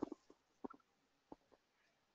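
Near silence: quiet room tone with a few faint, short clicks spread through it.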